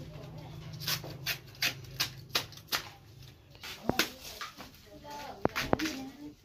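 Knife strokes cutting into a fresh bamboo shoot as it is peeled: a run of sharp cuts about three a second for a couple of seconds, then a few scattered strokes, over faint background voices.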